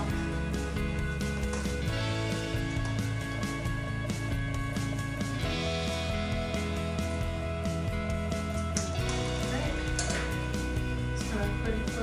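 Background instrumental music with steady sustained chords over a low bass line that changes note every few seconds.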